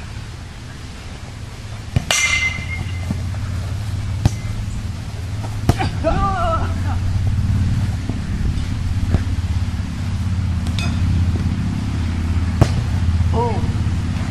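A bat strikes the ball with a sharp, ringing ping about two seconds in, followed by several lighter knocks during play, over a steady low rumble. Brief shouts come around the middle and near the end.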